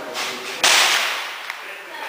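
A single rifle shot from a Mauser 1909 infantry rifle, 7.65×53mm: one sharp crack about half a second in, with a short echo off the covered firing line.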